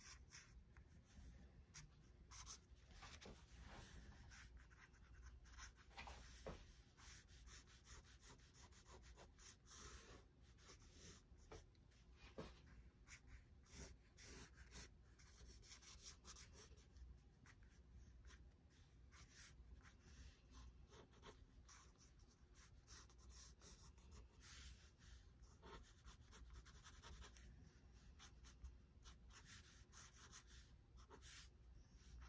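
Faint scratching of an old Pentel pen nib on drawing paper: many quick, irregular sketching strokes.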